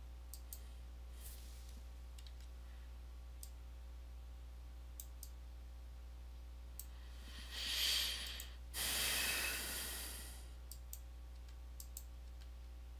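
Computer mouse clicking now and then while wiring a circuit, with a long sigh, a breath in and then a louder breath out near the microphone, from about seven to ten seconds in. A steady low hum runs underneath.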